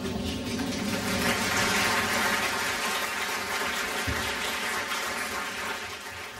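Theatre audience applauding. The clapping swells about a second in, holds steady, and dies down near the end.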